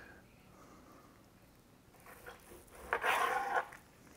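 Carving knife cutting through a smoked brisket's crust and meat and meeting the plastic cutting board. It is near silent at first, and the cutting sounds come in about two seconds in and are loudest near the end.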